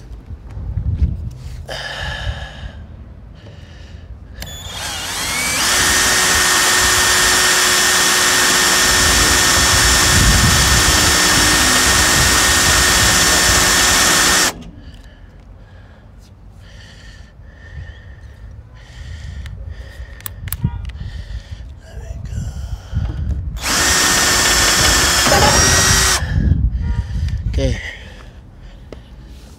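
Cordless 18-volt drill boring a rivet hole into a trailer's rear panel. It builds up to speed about five seconds in, runs steadily with a whine for about nine seconds and stops abruptly. A second, shorter run of about three seconds comes near the end.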